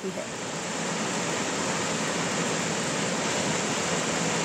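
Steady rushing noise of rain and running water, swelling a little over the first second.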